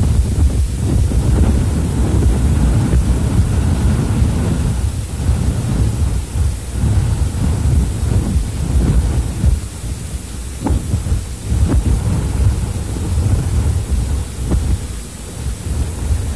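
Wind buffeting the microphone: a loud, unsteady low rumble with no clear pitch. A couple of faint clicks come about eleven seconds in.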